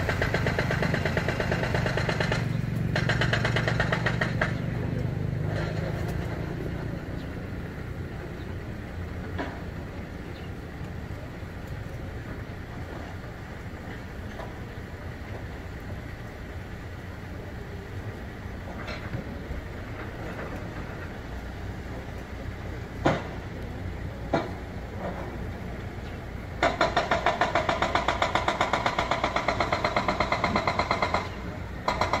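A motor vehicle engine running close by, with a low hum that fades away over the first several seconds. After a quieter stretch with two sharp clicks, a louder, steadily pulsing engine sound starts abruptly near the end.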